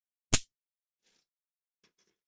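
One short, sharp smack about a third of a second in, from the plastic-bagged model-kit parts being handled on the cutting mat.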